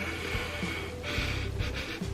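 A person sniffing in through the nose for about a second, smelling an incense stick held under the nostrils, over faint background music.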